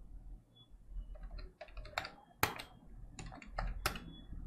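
Keys being tapped in short irregular runs of sharp clicks while a sum is worked out, with the loudest taps about two and a half seconds in and just before the end.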